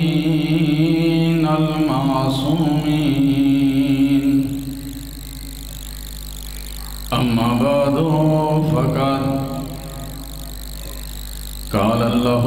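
A man chanting a religious recitation over a microphone and PA in long, drawn-out melodic phrases. There are two pauses between the phrases, and a steady low hum sits underneath.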